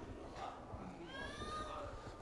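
A faint, high-pitched cry that rises and falls in one arc, starting about a second in and lasting under a second, over low room noise.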